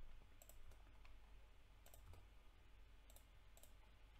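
Near silence with a few faint, sharp clicks from a computer keyboard and mouse as code is edited.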